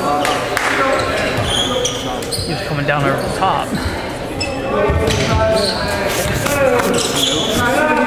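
Volleyball bouncing on a hardwood gym floor, with voices echoing in a large gym.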